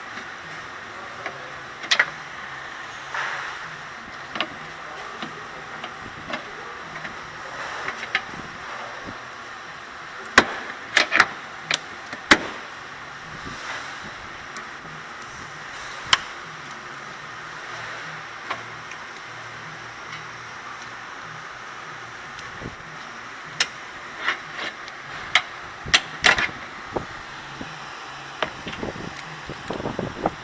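Scattered sharp clicks and knocks from hand work on a car's plastic wheel-well liner and the suspension fasteners behind it, in clusters around ten to twelve seconds in and again near the end, over a steady background hum.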